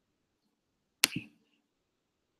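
Two quick knocks close to the microphone about a second in, the first sharp and loud, the second softer, with a brief ring after.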